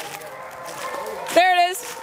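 A Penn-Marydel foxhound gives one short, wavering bay about one and a half seconds in: a hound opening on the fox's trail.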